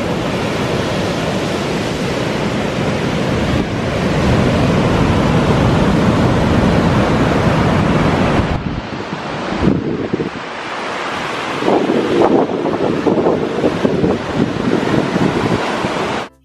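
Rough surf breaking on a beach, with wind buffeting the microphone; the wind gusts harder in the last few seconds.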